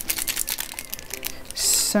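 Foil wrapper of a Pokémon TCG Sun & Moon booster pack crinkling in the hands as it is picked up and turned over, a rapid run of small crackles and clicks.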